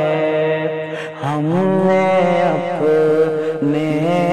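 A man singing a naat, an Urdu devotional poem in praise of the Prophet Muhammad, in a solo voice. He holds long drawn-out notes that slide slowly from pitch to pitch, with a short breath about a second in.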